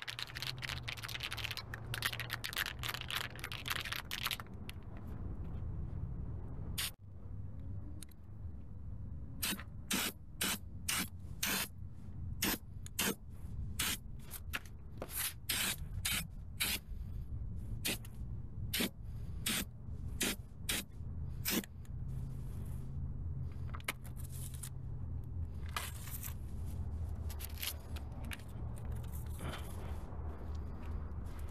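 Aerosol spray-paint can hissing as it sprays a steel wheel, first in a busy stretch, then in a long run of short separate bursts about every half second, then in longer passes again near the end.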